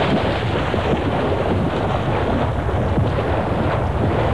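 Heavy, steady splashing of water as people run through shallow water and paddle an inflatable rubber raft.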